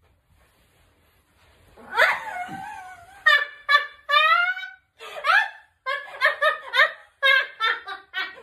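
Quiet for about two seconds, then a woman's sudden loud cry as she is lifted, breaking into laughter in short bursts, about three a second, to the end.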